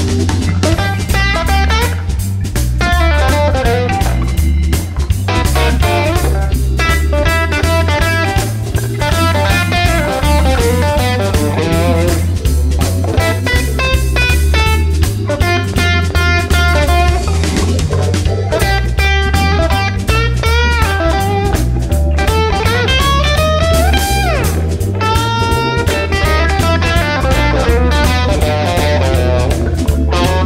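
Live blues band playing instrumentally: an electric guitar plays lead lines with bent notes over a steady bass line and drum kit.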